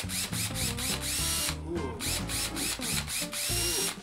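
Cordless power drill triggered in the air: a few short blips of the motor, then two longer runs of about half a second each, the whine winding up to speed each time.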